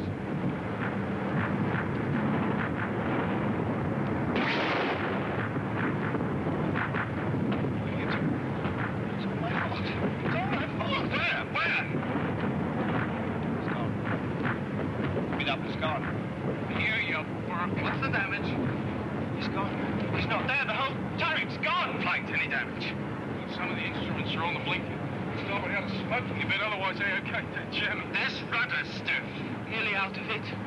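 Steady drone of bomber aircraft engines under repeated anti-aircraft flak bursts, with men's voices breaking in through the din.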